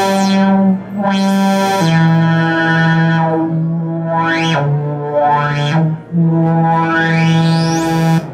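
Moog Sub Phatty analog synthesizer playing held notes that step down and back up, rich in overtones, while its low-pass filter cutoff is swept closed and open so the tone darkens and brightens. A long rising filter sweep opens the sound up near the end.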